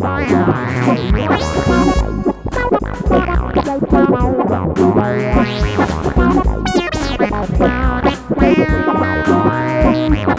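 Akai EWI 4000S electronic wind instrument played live as a melody. It is voiced through a hardware synth and effects pedals, over a looped accompaniment with a bass line and regular drum beats.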